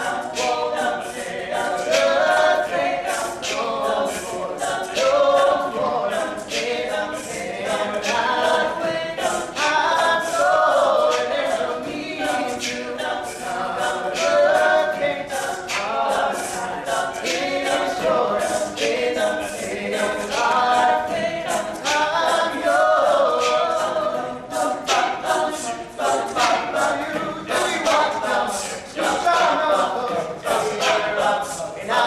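Teenage male a cappella group singing a pop song in close harmony, with a steady beat of sharp percussive hits running under the voices.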